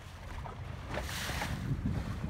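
Wind rumbling on the microphone and sea water washing past a sailing yacht's hull while she sails, with a brief louder rush of water or wind about a second in.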